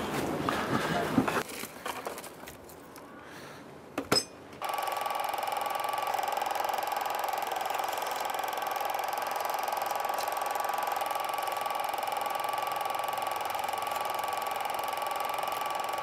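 Handling knocks in the first second or so, a sharp click about four seconds in, then a cine film projector starts and runs with a steady mechanical whir and hum.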